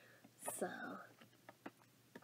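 A soft, breathy spoken "so", then a few faint, short clicks of lips pressing together and parting as freshly applied lip balm is felt.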